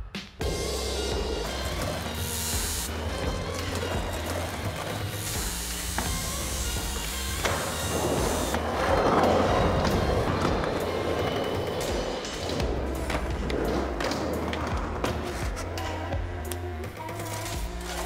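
Music with a steady bass line, over which skateboard wheels roll and clatter across steel plates.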